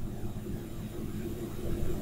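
Room tone: a steady low hum with a faint hiss.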